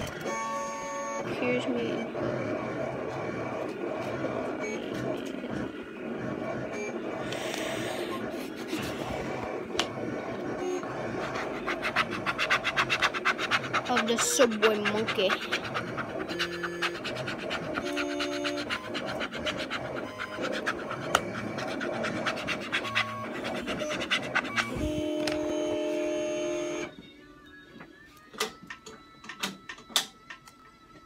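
Music and voices playing in the background, with quick scraping strokes in the middle as a squeegee smooths a vinyl number onto a sign. Near the end it drops much quieter, with a few clicks.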